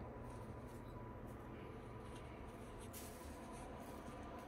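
Faint, scattered scratchy rustling of chinchillas scurrying over fleece and loose hay, over a low steady room hum.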